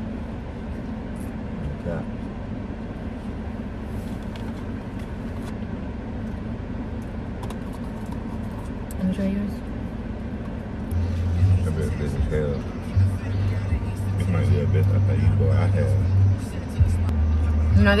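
Steady low rumble of a car's cabin. About eleven seconds in, background music with a deep bass line comes in.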